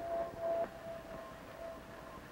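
A faint, steady high-pitched tone over low hiss. It is a little louder for the first half second, then carries on more quietly.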